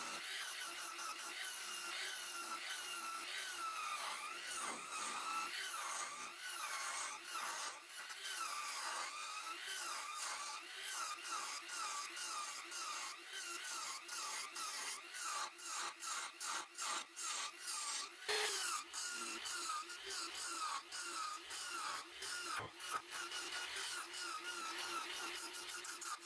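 A spinning wooden spindle on a wood lathe being cut with a hand-held turning tool: a continuous scratchy scrape full of quick ticks as shavings come off, with a whine that wavers up and down as the tool presses and moves along the wood. One louder, sharper scrape comes about three-quarters of the way through.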